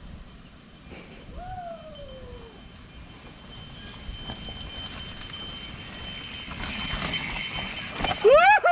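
A mountain bike rolling down a rough, rocky dirt trail, its tyres crunching over the dirt and the bike rattling, growing louder as it passes close by near the end. A single falling call is heard about a second and a half in.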